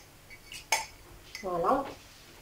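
A few short, sharp clinks of kitchenware against a glass mixing bowl while basmati rice is being rinsed in water, the loudest a little under a second in. A brief voice sound follows in the second half.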